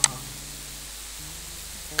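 Steady background hiss with a faint low hum (room tone of a voice recording), opened by one short sharp click.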